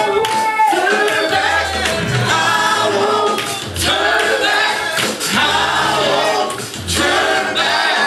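Gospel worship song: voices singing over microphones with the congregation, over instrumental backing with low bass notes underneath.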